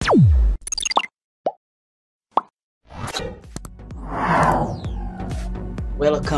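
Logo-intro sound effects and music: a tone sweeping sharply downward at the start, then a few short separate plops, then a denser stretch of music with clicks that swells about four seconds in.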